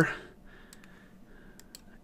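Faint computer mouse clicks, two quick pairs, as text is selected in a Notepad window.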